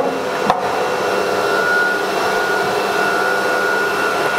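BCAMCNC S-series CNC router machinery running steadily: a hiss with a thin high whine, and a single click about half a second in.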